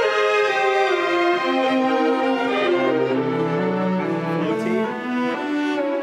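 Orchestral string section playing a passage of sustained bowed notes in rehearsal. Lower strings come in with held low notes about three seconds in.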